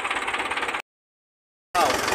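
Farm tractor engine running steadily with an even, knocking beat. The sound cuts out completely for about a second near the middle, then comes back at the same steady run.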